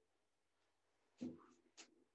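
Faint, brief strokes of a dry-erase marker on a whiteboard, with one short knock a little past a second in as an object is put against the board.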